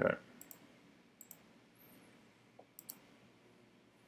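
A few sharp computer mouse clicks, each a quick double tick, spread unevenly over a few seconds.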